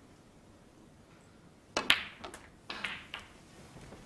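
Snooker cue striking the cue ball with a sharp click, a fainter click as the cue ball hits the black about half a second later, then a short rattle of knocks as the black drops into the pocket. Before the shot there is only a quiet arena hush.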